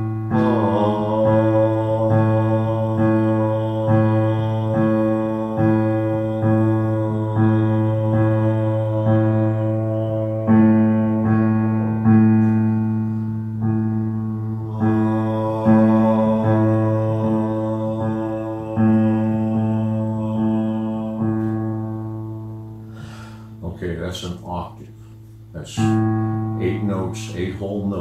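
Electric keyboard repeating one low A note, struck a little more than once a second and ringing on between strikes, with a sung tone held along with it. The notes thin out and fade near the end.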